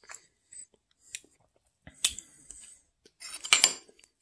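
A metal spoon clicking against a plate a few times, with a louder scrape about three and a half seconds in.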